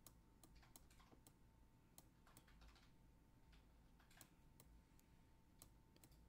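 Near silence with faint, irregular clicks of a stylus tapping on a pen tablet while handwriting is written out, over a faint steady hum.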